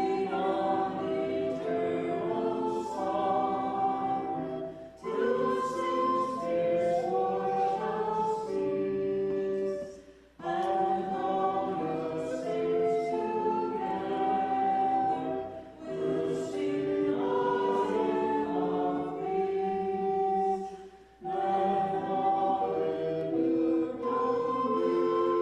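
A church congregation singing a hymn together, phrase by phrase, with a short pause for breath about every five seconds.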